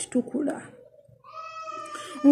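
A woman's voice briefly at the start, then a single long, high-pitched cry about a second in, lasting about a second and fainter than her speech.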